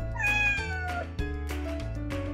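A domestic cat's single meow, about a second long and falling in pitch, over background music.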